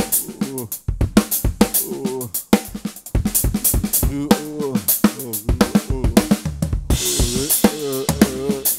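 Tama Starclassic drum kit played in a busy funk groove built from paradiddle-style diddles, hands playing open: quick snare strokes and bass drum kicks with notes moving across the toms. A cymbal wash comes in about seven seconds in.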